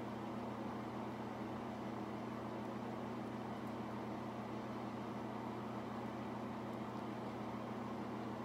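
Steady room background: a low, even hum with a faint hiss, unchanging throughout, with no distinct events.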